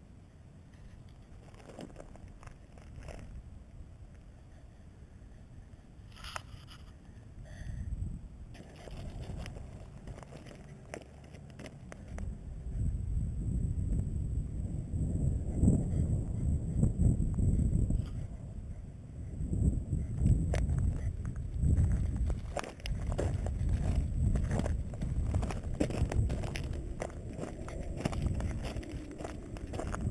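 Footsteps crunching on loose rock and gravel, with wind buffeting the microphone; both get louder about halfway through.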